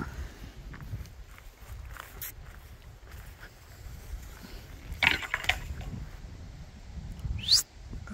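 Wind buffeting the phone's microphone as a steady low rumble, with a few sharp knocks about five seconds in and a short, sharp sound rising steeply in pitch near the end.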